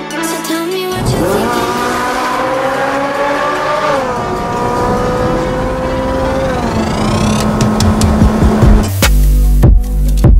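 Ferrari 458 Spider's V8 engine accelerating, its pitch climbing steadily for about three seconds, dropping at a gearchange about four seconds in, then holding steady before fading. Electronic music with heavy bass comes in near the end.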